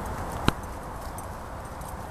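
Hoofbeats of a ridden horse moving over grass turf, with one sharp click about half a second in.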